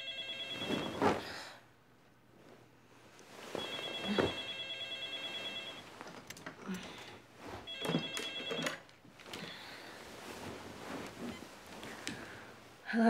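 Telephone ringing in a quiet room: rings about two seconds long, the third cut short as it is answered, followed by knocks and rustling as the handset is picked up.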